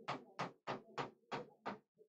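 Marker pen writing on a board: a run of short, sharp strokes, about three a second.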